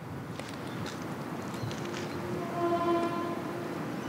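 A vehicle horn sounding one long, steady note of about two seconds, starting a little before halfway through, over faint outdoor background noise.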